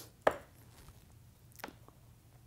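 Knife blade cutting through a stiff, day-old clay handle and striking the table top: one sharp tap about a quarter second in, then a fainter one near the end.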